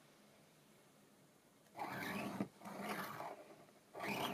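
A metal-tipped scoring stylus drawn along a steel rule across cardstock, scoring a diagonal fold line: two scratchy strokes, about two and three seconds in.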